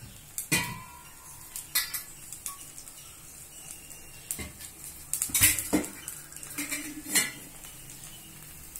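Metal utensils clink and knock against steel cookware, about seven separate strikes, some with a short ringing tone. Under them is a faint steady sizzle of adai batter cooking on a hot tawa.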